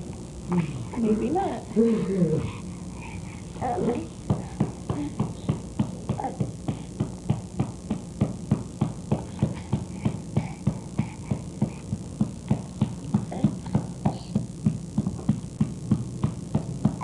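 A baby's short whimpering vocal sounds for the first few seconds, then a steady, rapid tapping rhythm of about three or four beats a second.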